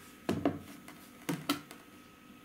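Stones knocking against a benchtop and each other as they are handled and set down: two pairs of short knocks about a second apart.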